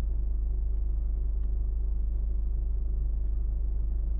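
Steady low rumble of a car engine idling, heard from inside the stationary car's cabin.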